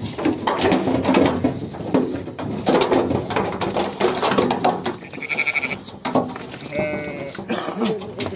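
A flock of sheep bleating, several calls overlapping.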